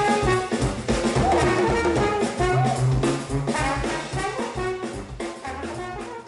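Jazz band music with a steady beat, fading out over the last couple of seconds.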